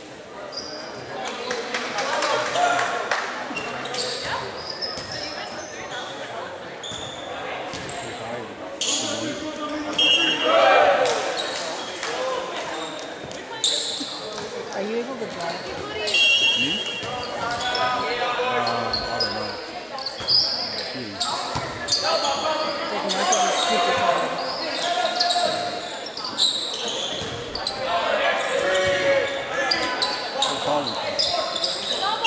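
Players' voices and calls echoing in a large gymnasium, with a volleyball being bounced and struck and short high squeaks from sneakers on the hardwood floor.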